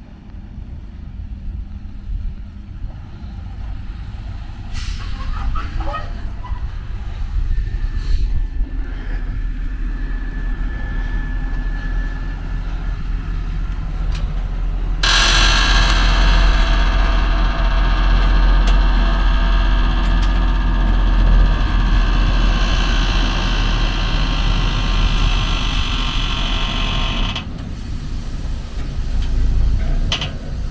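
Truck engine of a side-tipper road train running steadily, with a few clicks in the first half. About halfway through, a loud rushing hiss starts suddenly and goes on for about twelve seconds before cutting off, while the trailer tips and dumps its load.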